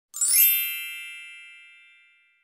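A single bright chime sound effect: struck once just after the start, with a high sparkling shimmer at first, then its clear ringing tones fading away slowly over about two seconds.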